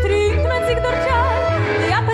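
A Ukrainian Yiddish song playing: a woman singing a wavering melody with heavy vibrato over a bass accompaniment that pulses in a steady beat.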